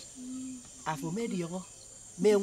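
Crickets or similar insects drone steadily and high-pitched in the background. Over them a woman's voice gives a short held hum, then a few spoken words.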